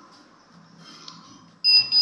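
Digital thermometer beeping, a sudden quick run of high-pitched beeps starting near the end, signalling that the temperature reading is finished; the reading shows a fever.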